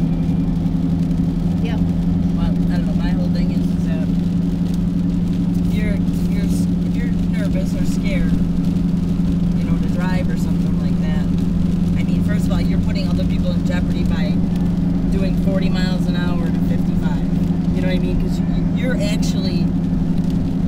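Steady engine and road drone inside a Jeep's cabin at highway speed on a wet road, an even low hum with no change in pitch.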